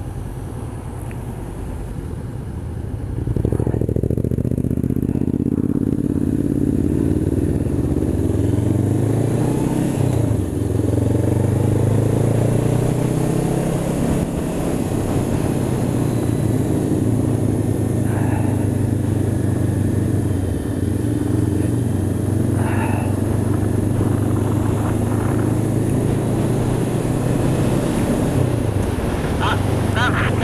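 Honda CB500X's parallel-twin engine pulling away about three seconds in and rising in pitch, with a gear change around ten seconds in, then running at a steady speed.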